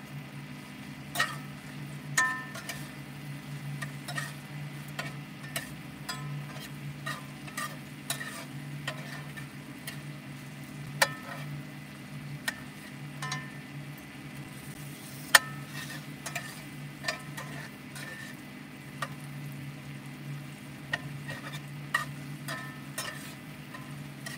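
Vegetables frying in a cast-iron skillet, stirred and scraped with a metal spatula: irregular clicks and scrapes of metal on the pan, some ringing briefly, over a steady low hum.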